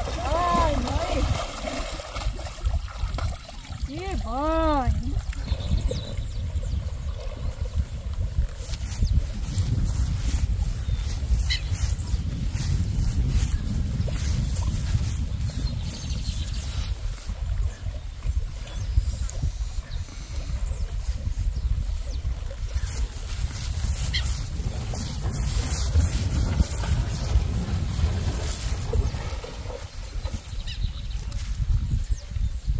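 A horse wading through a muddy pond, its legs sloshing the water, under a steady low rumble of wind on the microphone. A voice calls out briefly, with a rise and fall in pitch, at the start and again about four seconds in.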